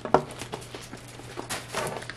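Brown kraft paper wrapped around a wax warmer rustling as it is handled, with one sharp knock just after the start.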